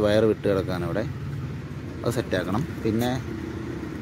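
A man talking in short phrases over a steady low hum.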